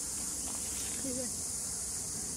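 Steady, high-pitched chorus of insects in the bush, running unbroken. A brief wavering vocal sound comes about a second in.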